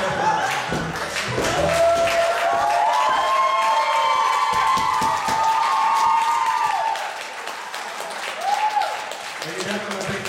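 Dance music ending in the first couple of seconds, then audience clapping and cheering, with several long drawn-out whoops and a shorter one near the end.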